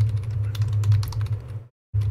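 Fast typing on a computer keyboard: a quick run of key clicks entering a command, over a steady low hum, stopping shortly before the end.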